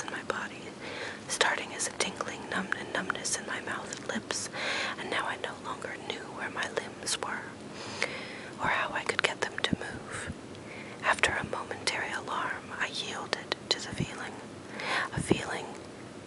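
A person whispering, reading a book aloud in a steady, breathy whisper, with small sharp clicks between words.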